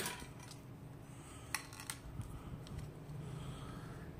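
Quiet handling of a gaming headset and its 3.5 mm cable, with a few light clicks of plastic and a metal jack plug, the sharpest about a second and a half in.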